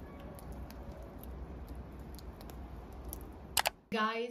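Outdoor ambience in a snowy garden: a steady low rumble with faint, scattered small ticks. A sharp click near the end is the loudest sound.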